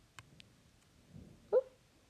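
A single short, high-pitched vocal squeak about one and a half seconds in, preceded by a few faint taps.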